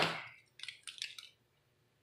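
A quick run of light clicks and taps about half a second in, from a pencil and plastic ruler being handled on a granite work slab while a line is measured out on leather. The tail of a man's speech fades at the start.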